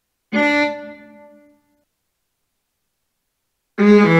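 MuseScore's synthesized viola sound playing a single note that starts abruptly and fades away within about a second. Near the end, score playback begins: a quick run of viola notes at shifting pitches.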